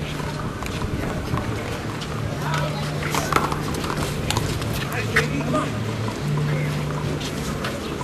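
One-wall handball rally: the small rubber ball smacked by bare or gloved hands and slapping off the wall in a string of sharp, irregular cracks, the loudest a little over three seconds in and again about five seconds in. Spectators' chatter runs underneath.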